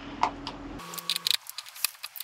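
Irregular small clicks and ticks of a hand tool working the forward-lean adjustment screw on a snowboard binding's plastic highback as it is loosened.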